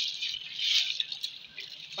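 Soaked, drained sela (parboiled) rice poured from a bowl into a pot of water: a steady hiss of grains falling into the water. It is loudest about halfway through and fades toward the end as the stream thins.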